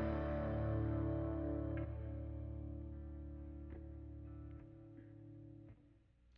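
A sustained guitar chord ringing out and steadily dying away as the music ends, its higher notes fading first. A few faint clicks sound as it decays.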